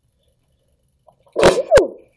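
A woman sneezes once, loud and short, about a second and a half in.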